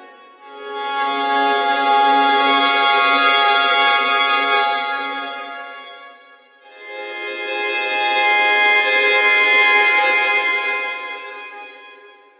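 Sampled solo violin playing sul ponticello bowed arcs, the bow close to the bridge, giving a thin, harmonic-rich tone. Two held swells each grow and fade away over about six seconds.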